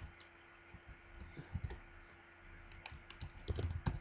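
Computer keyboard being typed on: scattered keystrokes at first, then a quicker run of clicks near the end.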